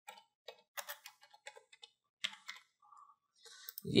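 Computer keyboard typing: a quick, irregular run of light key clicks.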